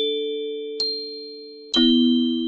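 Music box playing a slow melody: single plucked notes about a second apart, each ringing on and slowly dying away.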